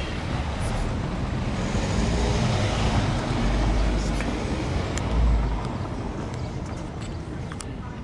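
Street traffic noise: a car passing along the street, its rumble swelling to a peak about five seconds in and then fading.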